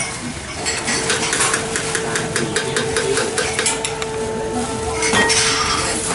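Utensils clinking against bowls and a steel stockpot in a quick run of about five clinks a second, then a louder clatter about five seconds in, over a steady hum.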